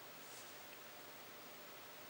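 Near silence: faint room tone with a steady low hiss.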